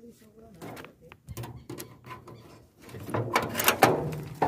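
Clicks and metal clunks of an old Volkswagen Passat's hood being unlatched and lifted open, louder near the end.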